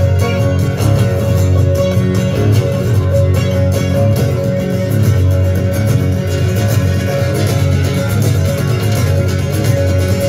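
Two amplified guitars, one an acoustic-electric, playing an instrumental duet live: picked melody notes over a steady, ringing low end.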